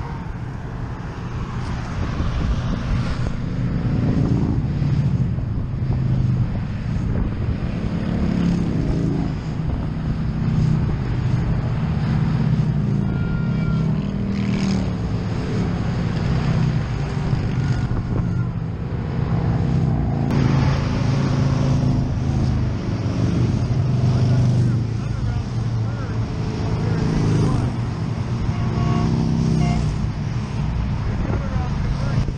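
Interstate traffic passing below: motorcycles, cars and tractor-trailers make a continuous rumble that swells and eases as vehicles go by.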